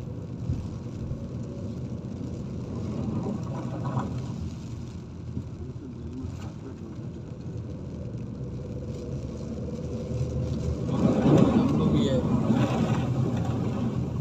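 Steady low rumble of a car cabin in the rain, with voices mixed in that swell louder about eleven seconds in.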